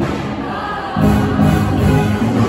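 Show choir singing in full voice with musical accompaniment during a competition set, the music swelling louder about a second in.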